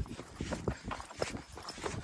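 Footsteps of people running on a dirt forest path: quick, uneven footfalls, about three or four a second, with the camera jolting along.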